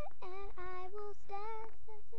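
A child's voice singing a tune in a series of short held notes that step up and down in pitch.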